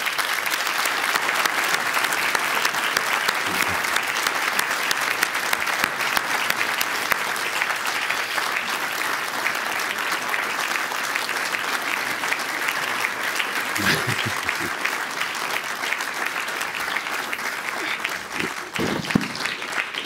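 Audience applauding steadily, a dense continuous clapping, with a brief voice about two-thirds of the way through and laughter near the end.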